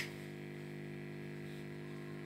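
Steady electrical hum, a constant buzzing drone with several pitches stacked together, with one sharp click at the very start.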